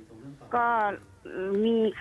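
Speech only: a woman speaking over a telephone line, two slow, drawn-out words with a short pause between them.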